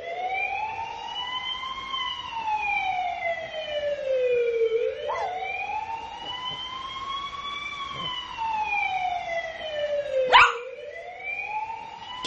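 Emergency vehicle siren on a slow wail, its pitch rising and falling twice in cycles of about five seconds. A sharp click about ten seconds in.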